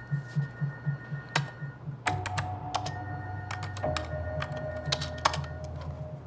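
Irregular clicking of computer keyboard keys being typed, over a low, pulsing music score with held notes.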